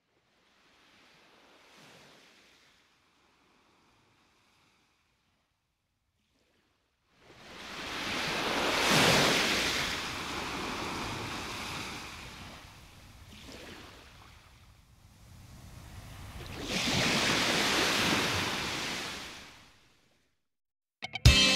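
Sea waves washing in: a faint wash about two seconds in, then after a quiet gap several surges of surf that swell and fall away, the loudest about nine seconds in and another long one near the end.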